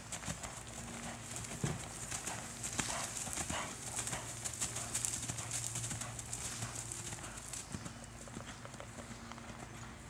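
Hoofbeats of a horse trotting on the soft dirt of a riding arena, a run of irregular dull thuds.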